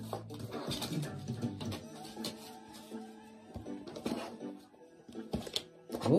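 Quiet background music with held notes, with scattered light clicks and taps from tarot cards being handled and shuffled.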